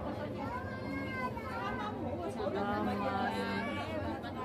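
Passengers chattering inside a crowded train carriage, with a steady low hum underneath.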